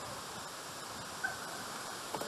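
Outdoor background ambience: a steady, even hiss, with a faint brief high note about a second in.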